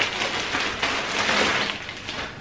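Clear plastic packaging bag crinkling and rustling as it is opened and clothes are pulled out, with a sharp crackle at the start.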